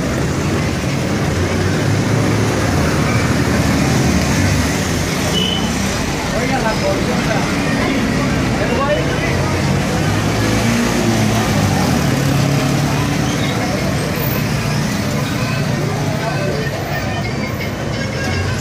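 Busy street traffic: motorcycles, a scooter and cars running and passing close by, with a crowd of people talking, loud and unbroken throughout.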